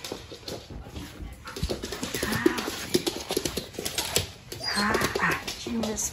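A pet dog up close, greeting its owner with bursts of noise about two and five seconds in among scattered clicks; a woman laughs briefly near the end.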